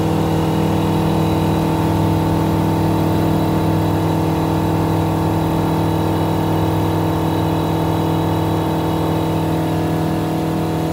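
Flight Design CTLS light-sport aircraft's piston engine and propeller running steadily at full takeoff power, heard from inside the cockpit, through the takeoff roll, liftoff and initial climb. The engine note holds one even pitch without rising or falling.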